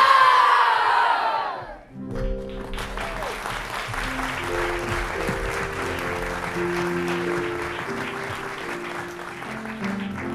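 A chorus of children's voices ends a song on a long note that slides down in pitch. About two seconds in, audience applause breaks out over the band, which plays held chords and a bass line as play-off music.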